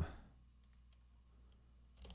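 Quiet room tone with a few faint computer mouse clicks.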